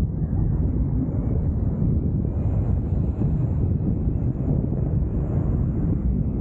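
Steady wind buffeting and rumbling on the microphone of a paraglider in flight, from the airflow over the camera.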